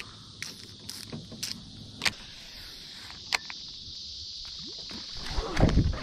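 Steady high-pitched drone of insects over calm water, broken by a few sharp clicks and knocks of fishing tackle being handled in an aluminum jon boat. Low-pitched noise swells in the last second.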